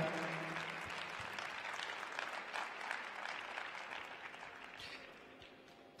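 Applause from a small audience in a large, mostly empty ice arena, thinning and fading away over a few seconds.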